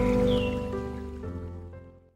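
Background music of held, sustained chords that changes chord twice and fades out to silence.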